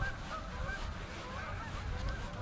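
Faint, distant bird calls: several short, wavering calls over a steady low background rumble.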